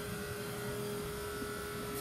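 Steady hum of a running engine with one constant tone, unchanging throughout.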